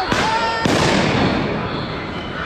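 Two loud explosive bangs about half a second apart, each trailing off in a long echo down the street.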